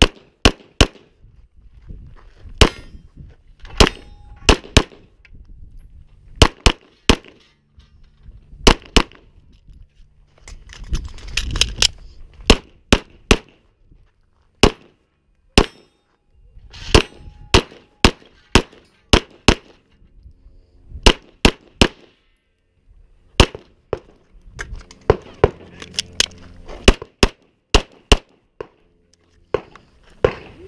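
Semi-automatic pistol fired in rapid strings, many sharp shots, often in quick pairs, broken by short pauses with the shuffle of movement between shooting positions.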